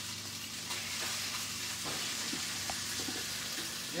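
Pasta mixture for a savoury migliaccio sizzling in hot oil in a frying pan as it is spread out with a wooden spoon. Steady sizzle with a few faint clicks in the second half.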